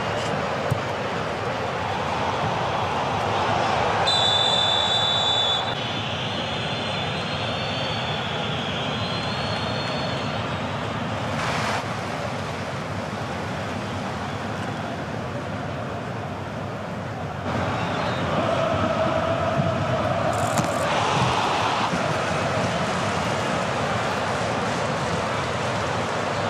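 Steady match-broadcast noise from a football pitch in a largely empty stadium, with a shrill referee's whistle blown once for about a second and a half about four seconds in.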